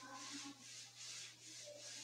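A duster wiping chalk writing off a board in quick back-and-forth strokes, a faint rhythmic rubbing hiss about two strokes a second.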